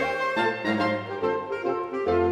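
Saxophone septet (soprano, three altos, two tenors and baritone) playing a traditional folk song arrangement in harmony. The lowest part drops out for most of the passage and comes back in at the very end.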